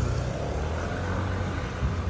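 Steady low rumble of city street traffic, a motor vehicle's engine running close by.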